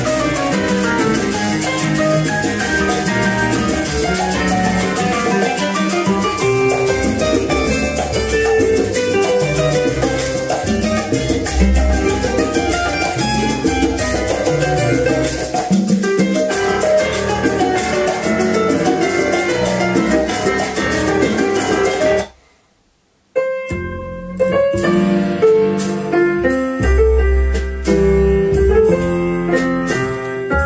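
Recorded music, with piano and guitar, played back through a 1989 Accuphase E-206 integrated amplifier and loudspeakers and heard in the room. The music cuts out for about a second a little over two-thirds of the way in, then carries on.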